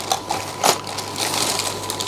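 Hands rummaging and handling small plastic containers of fish food: a crackly rustling with scattered clicks, and a sharper click about two-thirds of a second in.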